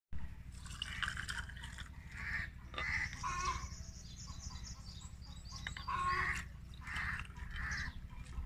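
Grape juice poured from a plastic pitcher over ice cubes into a glass, in two pours: the first runs for about three seconds, the second starts about six seconds in and lasts about two seconds.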